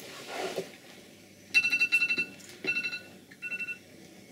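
Electronic alarm beeping in rapid pulses, heard in three groups: one of about a second, then two shorter ones. It plays from the film's soundtrack through a computer's speakers, in a small room.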